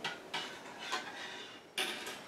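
Spoon scraping and clinking against a stainless saucepan, a few irregular strokes, while grated soap and water are stirred to melt.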